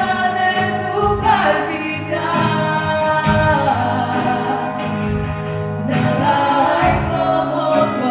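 Live church worship band playing a Spanish-language worship song with several voices singing together over guitars and keyboard, a steady drum beat underneath, heard from among the congregation.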